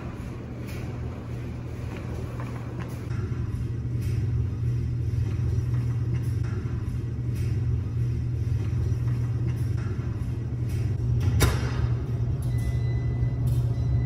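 Laundry being loaded into a front-loading washing machine: soft knocks as clothes go into the drum over a steady low rumble, which grows louder a few seconds in. A sharp thump comes about eleven seconds in, as the washer door is shut.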